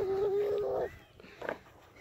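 A toddler's long drawn-out vocal sound, held at one steady high pitch, which breaks off just under a second in; a few faint ticks follow.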